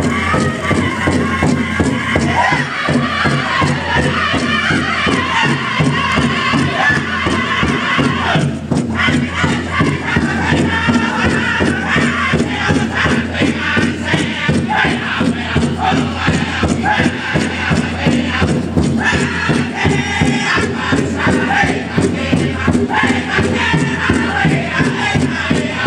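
A powwow drum group singing a fancy shawl dance song in chorus over a big drum struck in a steady, even beat.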